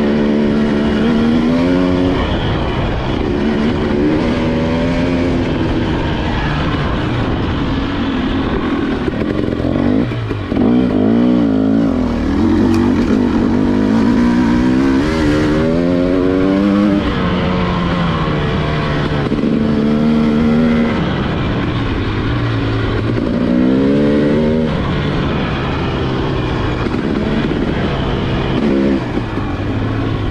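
KTM two-stroke dirt bike engine heard from the rider's position, revving up and down with throttle and gear changes, its pitch rising and falling repeatedly.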